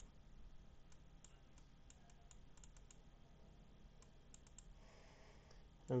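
Faint, irregular light clicks of a computer mouse and keyboard being used, several a second at times.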